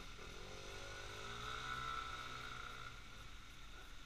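A motor scooter's small engine passing by, its pitched hum swelling to its loudest about two seconds in and then fading away, over faint street traffic.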